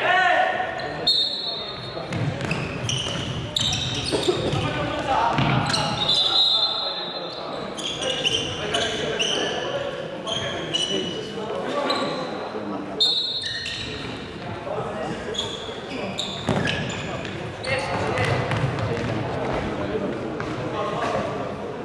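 Futsal game on an indoor court: players shouting and calling to one another, echoing in a large sports hall, with the ball being kicked and bouncing on the wooden floor.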